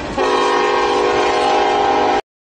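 A loud horn sounding one steady, held blast of several pitches at once, cutting in about a quarter second in over low outdoor background noise.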